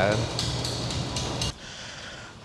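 Gym room sound: a steady low air-conditioning hum with a few light metallic clinks. It cuts off suddenly about one and a half seconds in.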